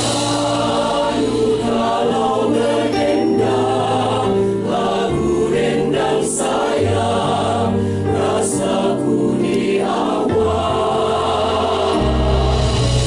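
Mixed choir of men and women singing a Malay song in several-part harmony, with held notes and a bass line moving in steps underneath.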